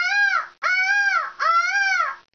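A woman's voice imitating a peacock's call: three high-pitched calls in quick succession, each arching up and then down in pitch.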